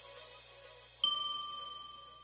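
A single bright bell-like ding about a second in, ringing on as it slowly fades. This is the interval-timer chime marking the end of the rest and the start of the next exercise. Before it, faint background music fades out.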